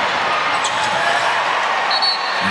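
A basketball bouncing on a hardwood court over a steady din of arena crowd noise.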